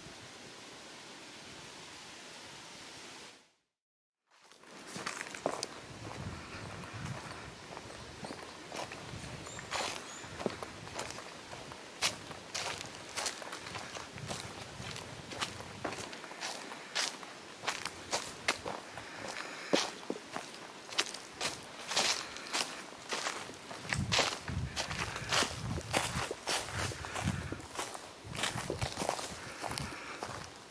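Footsteps crunching and rustling through dry fallen leaves on a woodland slope, an uneven run of crackles and soft thuds. Before them, a steady hiss for the first few seconds, broken off by a short silence.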